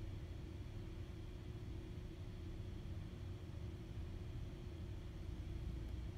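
Room tone: a low, steady hum with a faint steady tone above it that fades near the end.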